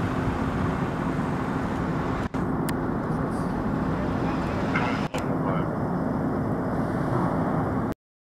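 Emergency vehicles driving by, a steady engine and road noise with a low drone. The sound drops out briefly twice.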